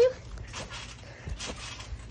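A few faint soft thumps from bare feet on a trampoline mat, under a low steady outdoor background.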